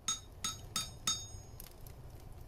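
Logo outro sound effect: four sharp ringing clinks in quick succession, about three a second, the last ringing on longer, over a low rumble.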